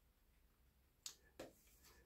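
Near silence: room tone, with two faint short clicks about a second in.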